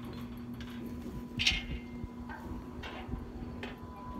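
Steady low hum of a pumpjack's motor running while the oil well is pumped, with a few faint ticks.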